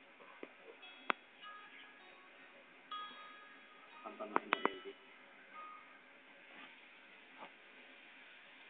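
Scattered sharp clicks and knocks, one about a second in and a quick run of three or four about four and a half seconds in, with short chime-like ringing tones between them.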